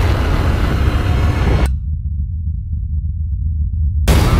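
Deep, steady low rumble of trailer sound design. For the first couple of seconds a loud rush of churning underwater noise sits over it, then cuts off abruptly, leaving only the rumble.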